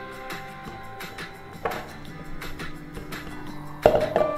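Background music: a few plucked notes over steady held tones.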